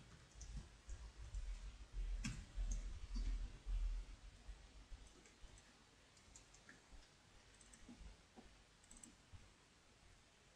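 Faint typing on a computer keyboard: scattered key clicks with low thumps, busier in the first four seconds and sparse after.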